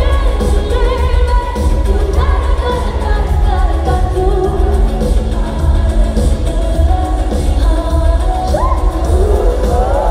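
Live pop music in an arena: a woman sings a gliding melody over an amplified backing track with heavy, steady bass, recorded from the audience.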